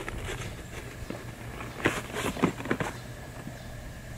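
A cardboard cereal box and a sheet of paper rustling and scraping as the paper is pushed down into the bottom of the box, with a few short crinkles and taps about two seconds in.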